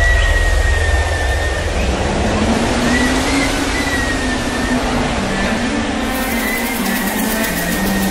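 Deep, steady bass rumble from a concert sound system, with a thin high tone and a wavering low tone drifting over it: the cinematic drone that opens a live DJ set's intro.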